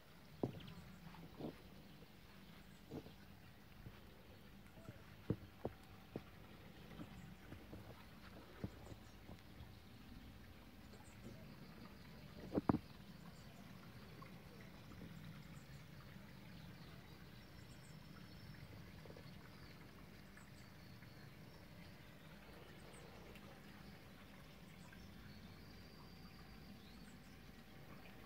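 Faint outdoor background sound with scattered soft clicks and knocks. The clicks come mostly in the first half, and the loudest is a little before the middle.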